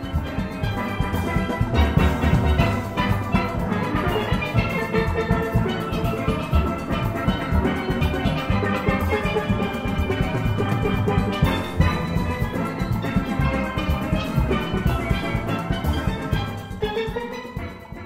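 Steel band music: steel pans playing over drums, fading out near the end.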